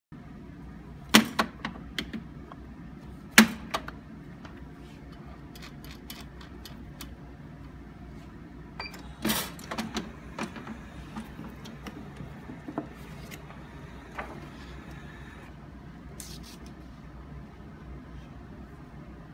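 A stack of paper pages knocked sharply on a glue binding machine several times to square the block, then clattering as it is set into the machine's clamp, with a few lighter taps and paper handling after. A steady low hum runs underneath.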